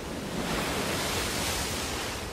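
Ocean surf and wind, an even rushing hiss that swells a little in the middle and eases off toward the end.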